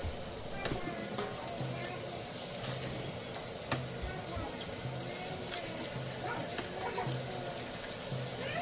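Eggs frying quietly in hot oil in a pan, with a few sharp taps as eggshells are cracked and dropped in. Soft background music with a steady beat about once a second plays underneath.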